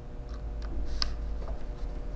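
Small Phillips screwdriver driving tiny screws into a metal 2.5-inch drive caddy holding an SSD: a few light metallic clicks and ticks, the sharpest about a second in.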